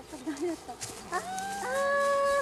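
A woman's voice giving a long, drawn-out cry: low and wavering at first, then rising about a second in into a high, steady held note to the end. It is a dismayed reaction to a golf shot that has gone wrong.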